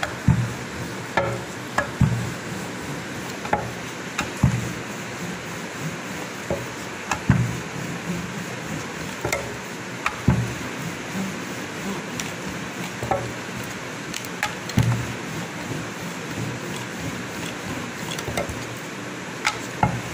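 Dull, irregular knocks, about one every second or two, as a ball of paratha dough is pressed and turned by hand on a round rolling board, over a steady hiss.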